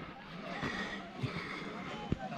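Footsteps on a wet mud trail, a few soft footfalls over a faint outdoor hiss.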